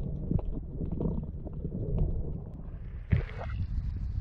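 Underwater swimming sound heard through a camera housing: a muffled low rumble of moving water with irregular soft thumps from fin kicks. About three seconds in the camera breaks the surface with a splash and the sound opens up into surface water slapping and wind.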